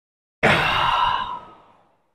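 A man's loud sigh of exhaustion after a hard set on a seated chest press, starting suddenly about half a second in and trailing off over about a second.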